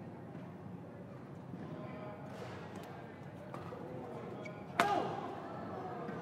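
Badminton rackets hitting the shuttlecock in a doubles rally, a few sharp cracks over a steady arena crowd murmur. A much louder smack comes near the end, followed at once by a shout.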